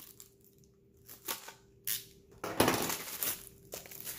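Clear plastic bag being slit with a snap-off utility knife, a couple of short scrapes, then about two and a half seconds in a louder stretch of plastic crinkling as the case inside is worked out of the bag.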